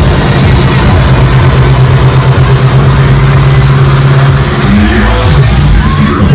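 Loud electronic dance music played over a club PA, recorded on a phone and distorted: a long held bass note that breaks off and bends in pitch about five seconds in.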